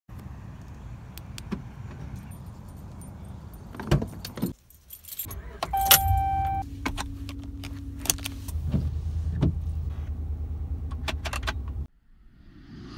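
Keys jangling and clicking on a Dodge Ram pickup's key ring as the truck is entered. About halfway through the engine starts, a short chime tone sounds, and the engine then idles steadily with keys still rattling, until the sound cuts off suddenly just before the end.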